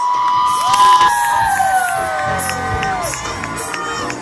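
Theatre audience cheering, with several long, high screams held at once for about three seconds and trailing off near the end.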